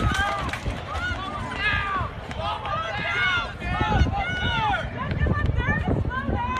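Several people shouting and crying out at once in overlapping, high-pitched calls, with no clear words.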